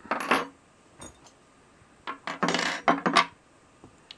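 Small metal hand tools (a cross wrench, a T-handle wrench and a flat spanner) set down and clattering on a wooden tabletop. There is a short clatter at the start and a longer one about two seconds in.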